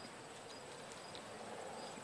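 Faint, steady high-pitched trilling of insects under a quiet outdoor background hiss.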